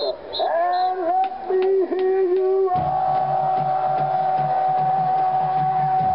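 Marching band horns playing: bending, sliding notes at first, then from about three seconds in one long held chord.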